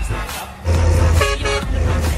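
Dance music with a heavy beat; about a second in a horn gives two short toots over it.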